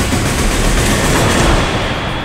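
A loud, dense rumbling sound effect with a heavy low end and no clear pitch, easing off slightly near the end.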